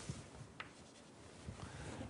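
Faint scratching of writing, with a small click about a second in, as a curve is drawn while plotting on the board.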